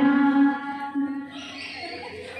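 A woman singing in long, steady, chant-like held notes. The held note ends about half a second in and a short further note follows about a second in, after which only softer background chatter of women remains.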